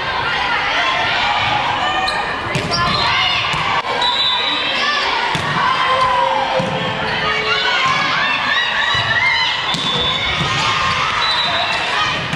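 A volleyball rally on a hardwood gym floor: sneakers squeak again and again, the ball is struck with sharp smacks now and then, and players call out and shout.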